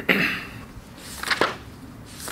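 A man's short, sudden coughs: one right at the start and another about a second and a half in.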